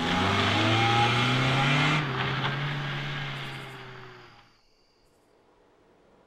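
Car engine accelerating as the car pulls away, its pitch rising slightly, then fading as it drives off. The sound cuts off abruptly about four and a half seconds in.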